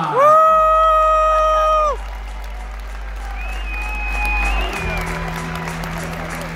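Music played over an arena PA, with crowd applause beneath it. A long held note fills the first two seconds, and a deep bass comes in about five seconds in.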